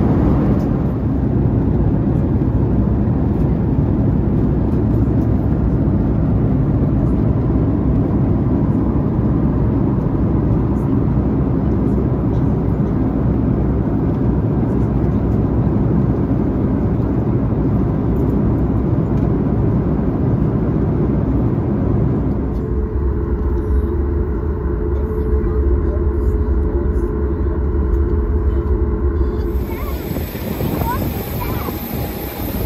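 Steady roar of a jet airliner's cabin in flight, engine and airflow noise. About three-quarters of the way through it changes to a deeper rumble with a steady hum running through it.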